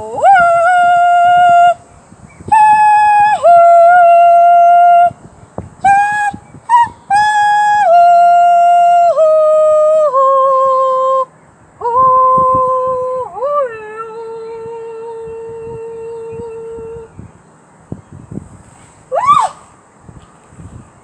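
A high woman's voice singing long, wordless held notes, each sliding up into its pitch, the phrases stepping downward with short breaths between them. A quick rising whoop comes near the end.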